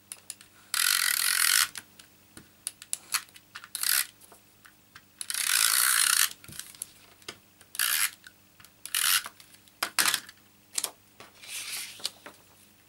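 Stampin' Up! SNAIL adhesive tape runner rolled along card stock in about seven strokes, each a short rasp; two of them last about a second.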